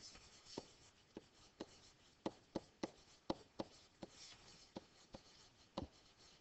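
A pen-type stylus writing on a hard writing surface: faint, irregular ticks of the pen tip, about a dozen, as a word is handwritten.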